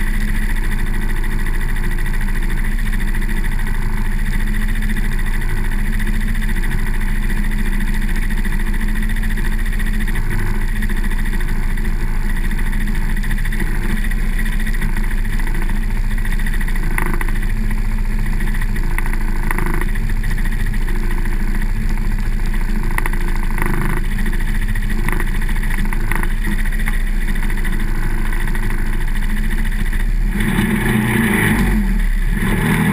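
ATV engine idling steadily while the machine stands still.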